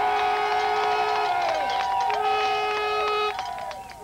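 Brass instruments holding long, steady notes in chords, several pitches at once, with notes changing in overlapping steps and bending down as they end.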